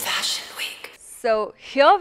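Mostly speech: a breathy, hissy noise for about the first second, then a woman's voice begins speaking.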